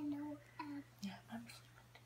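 Soft, hushed voices: a few quiet whispered words, falling silent near the end.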